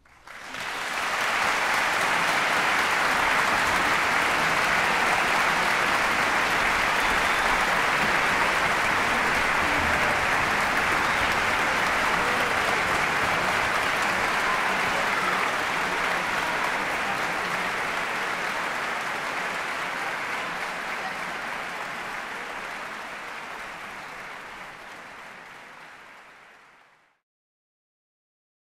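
Concert-hall audience applauding: the clapping breaks out suddenly about half a second in, holds steady, then slowly fades away over the last ten seconds or so.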